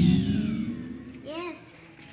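The tail of an intro's electronic sound effect, a rising low sweep under falling high tones, fades out over the first second. A short rising-and-falling voice follows about a second and a half in.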